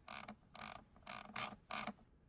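Faint ratcheting clicks of a computer mouse scroll wheel turned in short flicks, about three bursts a second, stopping near the end.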